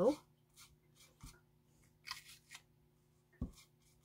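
Foam brush dabbing yellow paint onto a painted block: a few short, soft scratchy strokes with a couple of light knocks as the block shifts on the table, over a faint steady hum.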